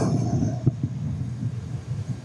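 Low, steady rumble of room noise picked up by the lecture-hall microphone, with a few faint, short sounds over it.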